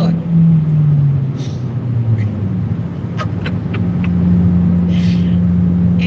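Car cabin drone from the engine and road while driving. A low hum slides down in pitch over the first couple of seconds, then holds steady from about four seconds in.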